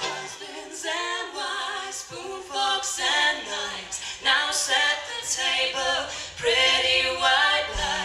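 Several voices, women's at the fore, singing together in harmony with little instrumental backing, live on stage.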